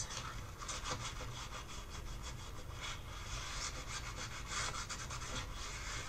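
Hand rubbing over the surface of a painting on paper, a steady run of quick, scratchy strokes.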